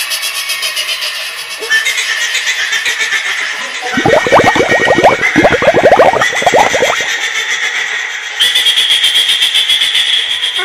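Cartoon rooster audio distorted by eerie echo and pitch effects: a wavering high-pitched drone, with a rapid run of falling squeals from about four to seven seconds in.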